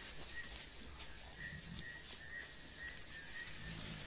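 Steady, high-pitched chorus of crickets, with faint short chirps repeating about three times a second from about a second and a half in.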